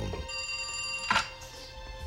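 Landline telephone ringing: one ring that is cut off by a click about a second in as the handset is lifted, over a steady background music drone.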